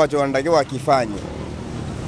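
A man's voice for about the first second, then street traffic: a steady low engine hum with background noise, the engine sound growing slightly toward the end.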